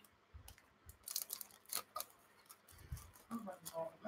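Faint, scattered clicks and crinkles of a plastic kit bag and loose plastic parts being handled.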